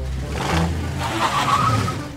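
Cartoon sound effect of a small car's engine running as it drives along. It starts suddenly and keeps a steady low rumble under a noisy rush.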